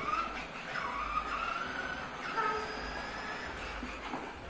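Plastic wheels of children's toy tricycles rolling over a tile floor: a steady rumble with a wavering, whining squeal.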